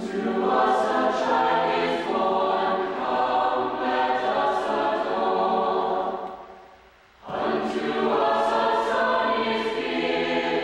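Mixed choir of men's and women's voices singing a four-part arrangement of a Christmas plainchant in English. Two sung phrases with a short break for breath about seven seconds in.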